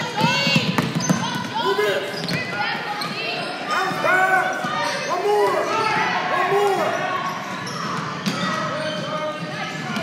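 Basketball being dribbled on a hardwood gym floor amid many short sneaker squeaks from players running, in an echoing gym with voices.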